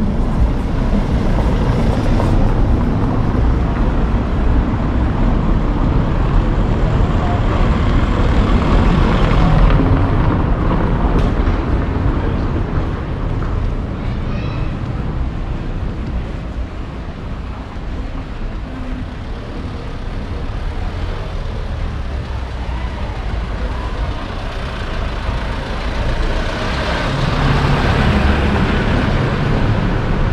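Outdoor town-street ambience picked up by a walking action camera: a steady low rumble with a general hubbub of the street, a little louder near the end.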